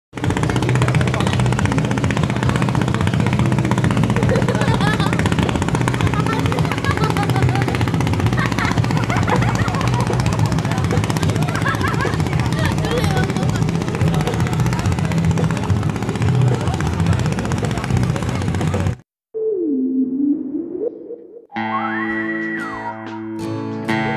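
A dense mix of voices over a steady low hum that cuts off suddenly near the end; then a single sliding tone that dips down and back up, and guitar music starts.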